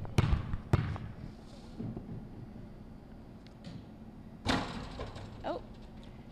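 A basketball bounced twice on a gym floor, two sharp thuds half a second apart, as a free throw shooter dribbles before shooting; a few seconds later a single louder bang, the ball striking the hoop on the shot.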